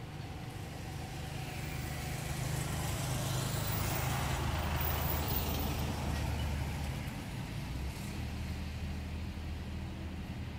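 A motor vehicle passing on the road: engine and tyre noise build up, peak about five seconds in, then fade away.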